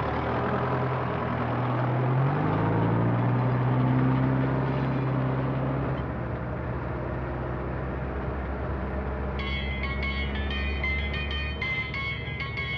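A van's engine running while driving; its pitch rises about two seconds in as it speeds up, then settles into a steady run. Near the end, music with short, bright high notes comes in over it.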